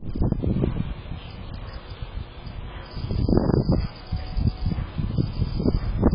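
Wind gusting on an outdoor security camera's built-in microphone, rising and falling in uneven swells with the strongest gust a little over three seconds in.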